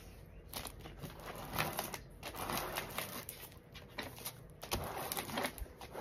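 Diamond painting canvas being smoothed flat by hand to work out air bubbles: irregular light rustling and crinkling of its plastic cover film, with scattered small clicks.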